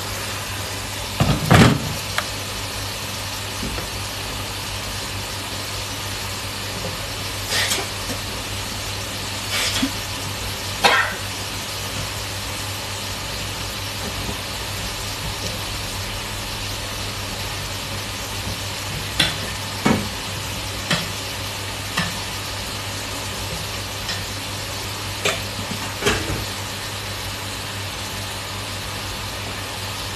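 Pork pieces frying in a stainless steel pot over a gas burner: a steady sizzle with short sharp pops scattered through, the loudest about a second and a half in, over a low steady hum.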